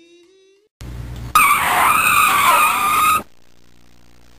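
Tyres screeching: a sudden burst of noise a little under a second in, then a loud wavering screech for about two seconds that cuts off abruptly, leaving a faint low hum.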